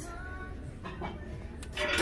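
Small metal buckets and tins knocking together as they are handled, with a loud metallic clatter near the end.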